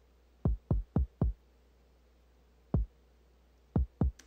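Kick drum track of a hip-hop session playing back on its own, being soloed while its level is set: short, deep hits that each drop in pitch. Four quick hits about a quarter second apart start about half a second in, then one more near the three-second mark and another near the end.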